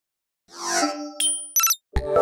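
Intro logo sting made of chime-like tones. It starts about half a second in with a ringing chord, then come quick bright high dings about a second and a half in, and a sharp hit at the very end.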